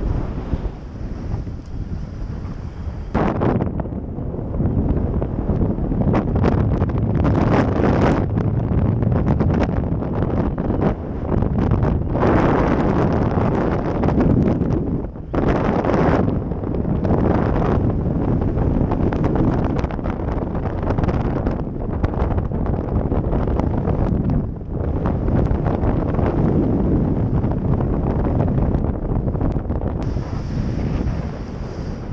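Wind rushing over a paraglider pilot's body-worn camera microphone in flight, surging louder and softer every few seconds.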